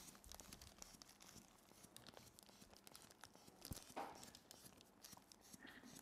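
Near silence with faint crinkling and small clicks of plastic being handled, and one brief louder rustle about four seconds in.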